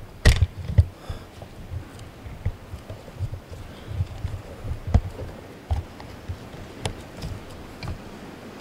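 Camera handling noise: a sharp knock against the mic about a third of a second in as the camera is moved, then scattered low thumps and a few faint ticks as it settles.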